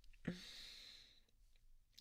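A man's soft sigh: a brief voiced catch, then a long breathy out-breath that fades away over about a second.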